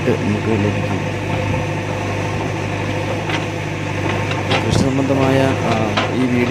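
JCB backhoe loader's diesel engine running with a steady low drone while the backhoe arm digs soil. A voice comes in near the end.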